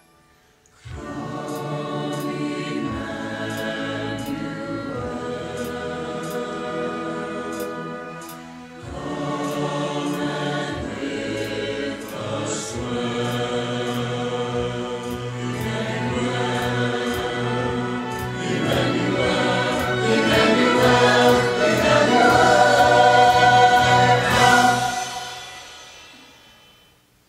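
Small mixed church choir of men's and women's voices singing an anthem. It starts about a second in, breaks briefly partway through, swells to its loudest near the end, then dies away.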